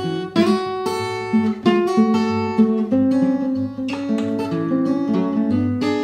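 Steel-string acoustic guitar fingerpicked in an instrumental break, with steady bass notes under a picked melody line.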